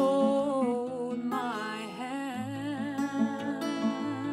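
A woman's voice holding long sung notes without clear words. The line glides to a new note about a second in and then wavers in a vibrato. Under it, a steel-string acoustic guitar keeps up a steady pattern of low notes.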